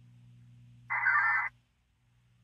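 One short burst of VARA HF digital data tones from an Icom 7100 HF radio during a Winlink email transfer: a dense multi-tone warble about half a second long, starting near the middle. A low, steady hum runs underneath.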